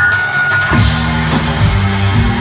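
Live rock band with two drum kits, bass and electric guitar: a held high guitar feedback tone fades, and about three-quarters of a second in the whole band comes in together, playing loud with heavy drums and bass.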